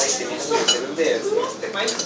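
Dishes and cutlery clinking, a few sharp ringing clinks (one about two-thirds of a second in, another near the end), over background chatter.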